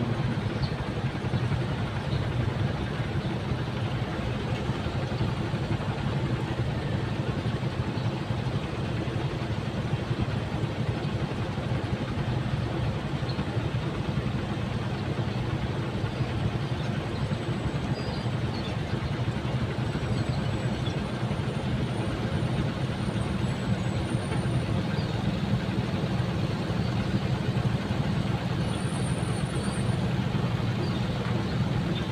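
Steady engine hum and road noise from riding a motorcycle through slow city traffic.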